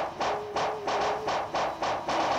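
A ball dribbled fast on a hard floor: sharp, evenly spaced bounces, about five a second.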